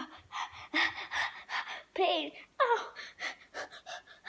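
A boy gasping and sucking in sharp breaths in mock pain, with two falling, pitched whimpering cries a couple of seconds in.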